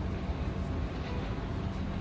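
Steady low background rumble with a constant low hum and no distinct events.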